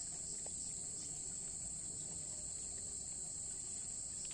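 Steady, high-pitched insect chorus, a continuous shrill drone that does not change through the moment.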